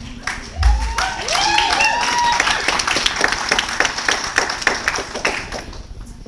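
An audience clapping and cheering, with high whoops rising and falling in the first couple of seconds. The clapping thins out near the end.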